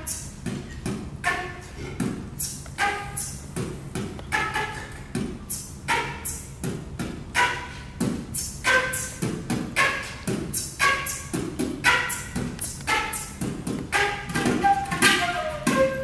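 Beatbox flute: a concert flute played with an airy, breathy aeolian tone while the player beatboxes a 'boots cats' kick-and-snare pattern through it, giving a steady fast beat. The flute pitch changes from phrase to phrase, with lots of beatbox over light flute.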